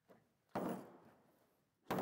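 Handling noise from unpacking a power tool from its hard plastic case: a dull thunk about half a second in that fades quickly, then a sharp knock near the end.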